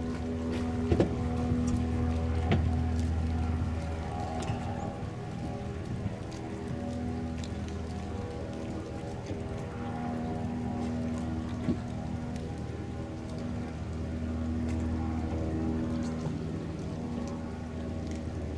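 Steady low engine drone made of several held tones that pulse in and out as they beat against each other, swelling and easing slowly. A few sharp clicks come in the first few seconds, with one more near the middle.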